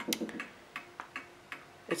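Late-1920s Sessions Berkeley tambour mantel clock ticking, a loud, sharp tick from its movement.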